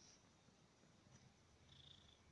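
Faint purring of a Siamese kitten, a low steady rumble.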